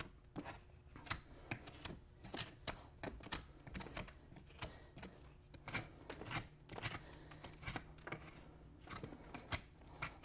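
Hoof knife paring dried soil and flaky sole from a draft horse's hind hoof, which is hard and dry: a run of short, quiet scrapes and clicks at an uneven pace.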